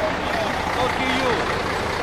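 Diesel engine of a MAN 26.402 dump truck idling close by, a steady running sound, with faint voices over it.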